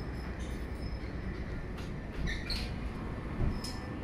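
Steady low rumble of street traffic heard from a pavement, with a few light clicks and a brief high chirp about halfway through.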